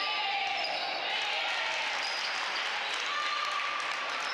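Basketball game in play: sneakers squeaking on the court floor as players run, over a steady background of shouting voices from players and spectators.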